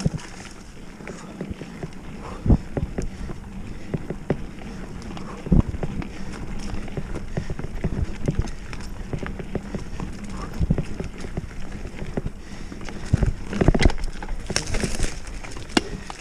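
Oggi Cattura Pro mountain bike riding a rough dirt singletrack: tyres rolling on dirt and the bike rattling with irregular knocks over bumps, a few sharper ones about two and a half and five and a half seconds in and a cluster near the end.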